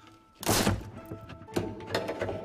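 A wooden crate lid being opened: a heavy wooden thunk about half a second in, then a couple of lighter knocks, over background music.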